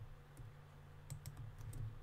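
A handful of faint, scattered clicks from a computer keyboard and mouse, over a low steady hum.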